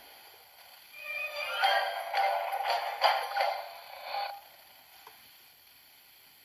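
DVD menu transition music and effects playing from a TV's speaker, thin with no bass. A burst of about three seconds starts a second in with a short rising sweep, then cuts off.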